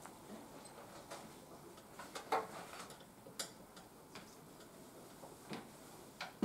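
Faint room tone with a handful of light, irregular clicks and taps, strongest a little over two seconds in and again about a second later, from pens and papers handled on classroom desks.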